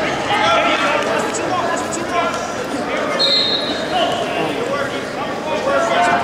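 Indistinct voices of coaches and spectators carrying through a large gym hall, with thuds of bodies on wrestling mats.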